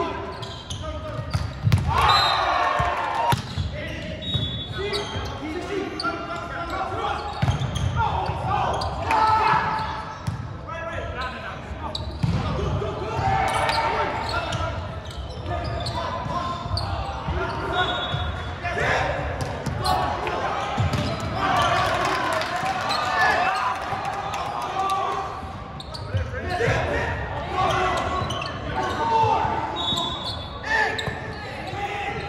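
Indoor volleyball rally in a large gym: players' shouted calls and voices run throughout, with the sharp thuds of the ball being passed, set and hit and the occasional shoe squeak, all echoing in the hall.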